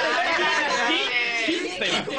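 Several men's voices talking over one another in a lively jumble of chatter.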